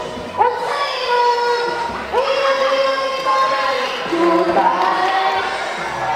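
A girl and a boy singing a duet into handheld microphones through a PA, holding three long notes in turn, each one sliding up into pitch.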